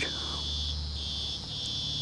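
An insect trilling at a high, steady pitch, in stretches of about half a second broken by short gaps.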